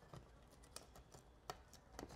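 Near silence with a few faint clicks and taps as a plastic thermostat wall plate is handled and slid against the wall, the clearest about a second and a half in.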